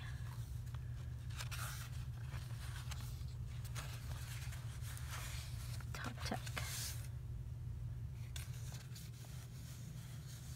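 Paper and cardstock being handled: irregular rustling and scraping of journal pages and paper pieces, over a steady low hum.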